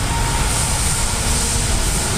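Steady low rumble with a high hiss, with no distinct event standing out.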